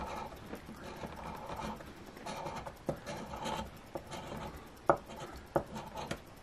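A coin scraping the coating off a cardboard lottery scratch-off ticket on a wooden tabletop: a quiet run of short rasping strokes, with a few sharper ticks in the second half.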